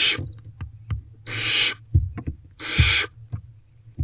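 Barn owl owlets giving hissing calls, three rasping hisses about a second and a half apart, with short knocks and scratches from the birds moving about on the nest box floor.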